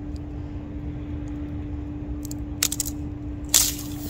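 Thin ice on a frozen puddle cracking under a shoe: a few sharp cracks a little after two seconds in, then the loudest crackle near the end as the sheet breaks. A steady low hum runs underneath.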